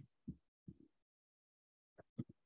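Near silence, with two faint low thumps in the first second.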